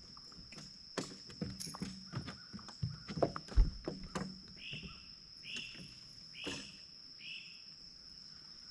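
Knocks and taps on a fiberglass bass boat deck as a small bass is played and landed, with one heavy thump a little past three seconds in. Then a bird gives four short calls, a little under a second apart, over a steady high whine.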